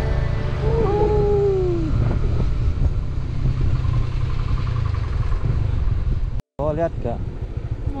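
Motorcycle engine and wind noise while riding, a steady low rumble. A short falling tone comes about a second in, and the sound cuts out briefly near the end.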